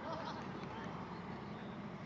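Distant Bell Boeing MV-22 Osprey tiltrotor flying with its rotors tilted up in helicopter mode, a steady low rotor and engine drone. Voices of onlookers are heard briefly near the start.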